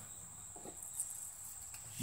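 Faint, steady, high-pitched insect trill of crickets, with a faint tick or two near the middle.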